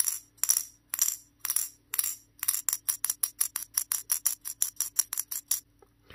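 Metal ball in a handheld dexterity puzzle clinking with a bright metallic ring against the puzzle's steel cone as the puzzle is lifted and set down again and again. The clinks come about twice a second at first, then in a quicker even run of about six a second for some three seconds, and stop shortly before the end.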